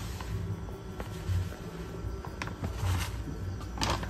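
Plastic bag of tapioca flour rustling as the flour is poured into a bowl, with a few light clicks and taps, over low background music.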